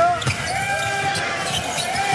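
A basketball being dribbled on a hardwood court, with the busy sound of the arena around it.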